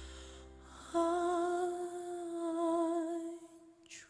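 Male singer holding one long, wavering note with vibrato, without words, beginning about a second in over the last of a fading piano chord; it ends shortly before the close with a quick breath.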